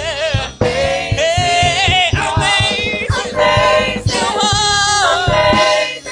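Gospel music: a choir singing with vibrato over a steady drum beat.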